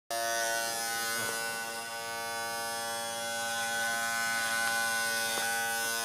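Electric hair clippers buzzing steadily, one constant pitched hum that starts abruptly at the very beginning.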